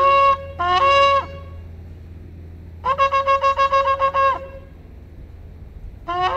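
Shofar blown in short separate blasts, each scooping up in pitch as it starts. After a pause comes a longer blast broken into rapid staccato pulses, about seven a second.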